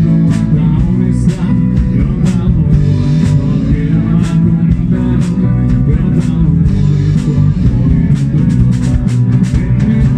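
A rock band playing live: drum kit keeping a steady beat under electric bass, electric guitar and acoustic guitar.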